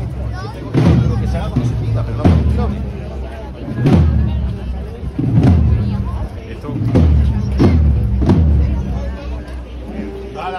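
Spanish processional brass band (banda de música) playing a slow procession march: deep bass-drum strokes about every three-quarters of a second under sustained low brass, trailing off near the end.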